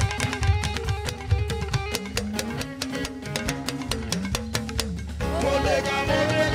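Live band music led by a talking drum struck rapidly with a curved stick, its pitch bending up and down, over guitar, bass and drums. Near the end the drumming eases and a voice comes in.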